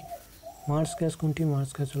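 Speech only: a man's voice reading aloud after a brief pause, beginning about two-thirds of a second in.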